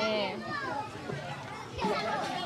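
Children's voices and chatter from a crowd gathered outdoors, with a higher child's voice calling out near the start.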